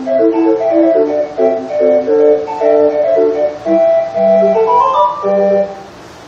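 A hand-cranked 20-note street organ playing a tune from a punched paper roll: held, reedy organ notes in a melody over short bass notes, with a quick rising run about five seconds in. The music drops away briefly at the very end.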